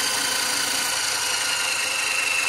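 Tesla turbine's disc runner spinning its two brushless generators through 3.6:1 gears, giving a steady hum and gear whir with some bearing noise; the bearings are thought to be a little rusted from water run through the turbine. A faint high whine comes in during the second half and sinks slightly in pitch as it runs down.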